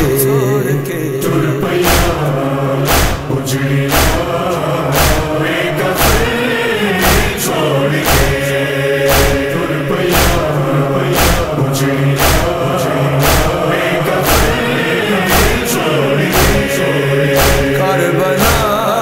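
Nauha, a Shia lament: a male chorus chanting over sharp, evenly spaced beats about twice a second, the matam (chest-beating) rhythm that carries a nauha.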